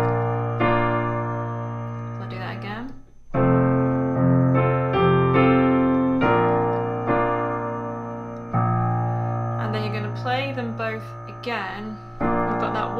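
Piano playing a chord accompaniment in F major (F, B-flat, G minor 7, C). Each chord is struck and left to ring and fade, with a new chord every second or two.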